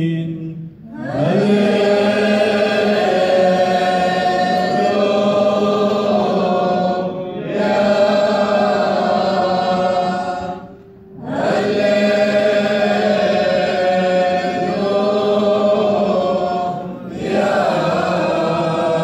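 A group of male voices chanting a Syriac liturgical hymn of the Assyrian Church of the East. They sing in long held phrases, with brief pauses for breath about a second in, about seven seconds in, at about eleven seconds and near the end.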